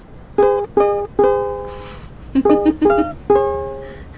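Ukulele playing a short tune of plucked notes and chords, each ringing and fading, in two phrases that each end on a longer held note.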